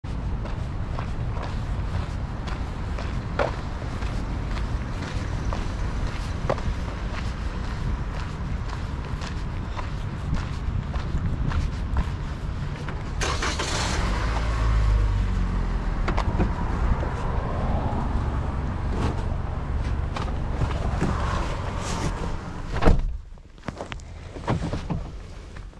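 Footsteps on a sidewalk over a steady low street rumble, with a car passing about halfway through, louder as it goes by. Near the end a car door shuts with a loud thud, and the sound drops to the quieter inside of the car.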